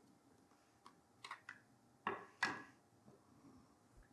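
Metal spoon stirring beet juice in a container, giving a few faint clinks and scrapes, the loudest pair about two seconds in.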